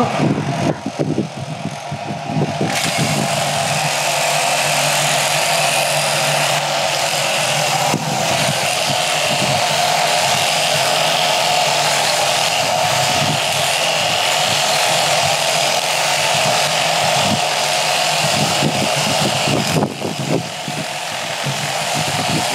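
Electric sheep shears running steadily, the handpiece's comb and cutter clipping wool from a sheep's belly. The whir builds over the first couple of seconds and dips briefly near the end.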